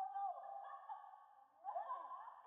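A muffled, thin-sounding voice with no clear words, pausing briefly near the end.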